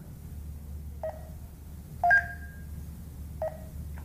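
Garmin nüvi 255W GPS navigator's touchscreen beeping as its on-screen buttons are pressed: three short beeps about a second apart. The middle one is the loudest, with a higher second tone that rings on a little longer.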